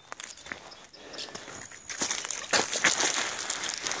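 Footsteps on dry, gritty ground at the edge of a shrinking pond: a few faint scuffs at first, then louder crunching steps from about halfway in.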